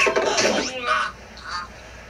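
A person's voice for under a second, with a sharp click at its start, then a low background with a few faint short sounds.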